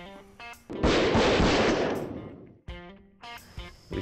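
Volley of shotgun shots from several hunters fired together at incoming ducks, starting about a second in; the shots run together into one loud burst that dies away over about a second and a half.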